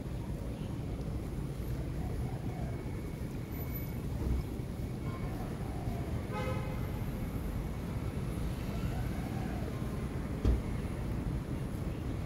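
Steady low rumble of outdoor background noise, with a short pitched tone about six and a half seconds in and a single thump near the end.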